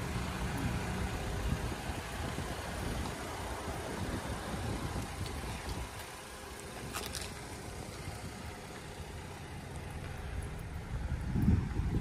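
Wind buffeting the microphone outdoors: a steady low rumble and hiss, with a single light click about seven seconds in.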